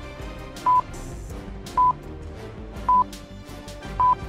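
Countdown timer sound effect beeping, a short steady high-pitched beep about once a second, over background music.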